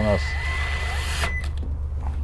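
AEG cordless drill-driver running a screw into the greenhouse door frame to fix a chain: a steady high whine with hiss that stops abruptly a little past halfway.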